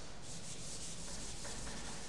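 A board duster rubbing chalk off a chalkboard in repeated back-and-forth strokes: the board being erased.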